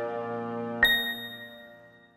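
Soft, sustained outro music fading out, with a single bright chime struck a little under a second in that rings and dies away with it: a logo-sting ding.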